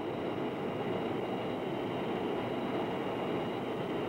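Steady jet aircraft noise as heard inside the cockpit: an even rushing hum with a faint, steady high whine.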